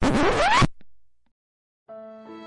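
A record-scratch sound effect, a short rasping scratch sweeping up in pitch, cuts off after about two-thirds of a second. After a pause, sustained string music fades in near the end.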